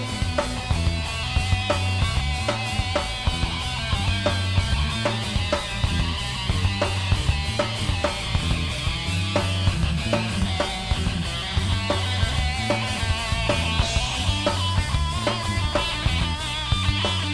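Rock band playing live: electric guitar, bass and drum kit, with drum hits on a steady beat.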